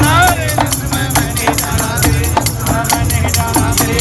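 Jangam jogis' devotional folk singing to Shiva, a lead voice with wavering, gliding ornaments at the start. Wooden clappers (kartal) and small hand drums keep a quick, steady beat.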